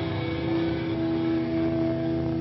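Distorted electric guitars from a live band holding a chord as a steady drone, with no drum hits. The chord changes about a second in.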